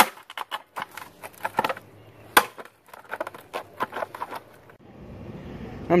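A metal hand tool scraping and knocking inside a ceramic pot, prying at the packed soil to work a stuck plant loose: a run of irregular scrapes and clicks with one sharper knock about two and a half seconds in. Near the end it gives way to steady outdoor background noise.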